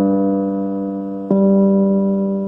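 Electric piano keyboard sounding a single low G note, held and slowly fading, with a second strike a little over a second in.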